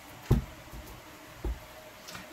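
A deck of tarot cards being handled and squared in the hands over a table, with one soft, short thump about a second and a half in.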